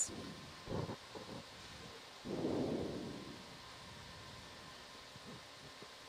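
Steady faint hiss, with a short muffled thump just under a second in and a softer rushing swell about two seconds in that fades over a second.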